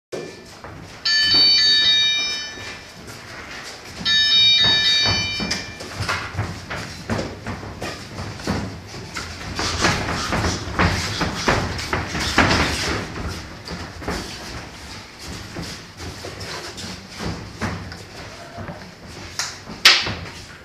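A gym round timer sounds two long, steady electronic beeps, the signal for the round to start. Then comes an irregular string of short knocks and thuds from gloved punches and feet moving on the ring canvas.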